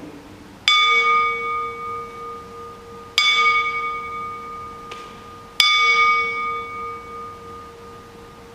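A small altar bell (sanctus bell) struck three times, about two and a half seconds apart, each stroke ringing out and fading. It is the bell rung at the elevation of the chalice after the words of consecration over the cup.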